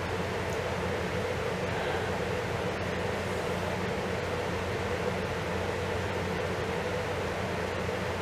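Steady hum and even hiss of room ventilation, with a low drone and a faint held tone.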